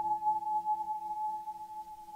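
A sustained high pure tone from a water-filled wineglass rubbed at the rim, held steady. Underneath it, a lower out-of-tune guitar note rings on and slowly dies away.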